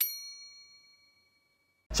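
A single bright notification-bell ding sound effect, triggered as the bell icon in a subscribe-button animation is clicked, ringing out and fading away over about a second.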